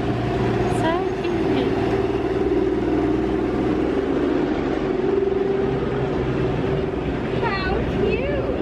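A small tourist road train driving slowly past at close range, its engine giving a steady drone with a held tone. Brief voices are heard about a second in and again near the end.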